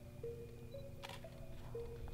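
A single camera shutter click about a second in, after a three-two-one countdown for a group photo. Faint background music with long held notes plays underneath.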